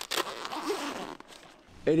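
The door zipper on the flysheet of a Robens Arrow Head 1 tent being pulled open in one scraping run of about a second and a half.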